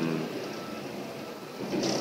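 Steady background noise of a room in a pause between spoken words, with a brief faint voice sound near the end.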